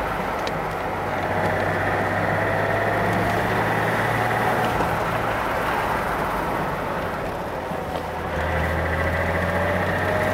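BMW E21 323i's 2.3-litre straight-six running steadily on the move, with wind and road noise in the open-topped cabin. The engine note drops a little about eight seconds in.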